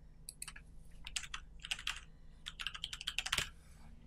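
Computer keyboard being typed on: about fifteen quick, uneven keystrokes entering one short word, fastest in a run near the end.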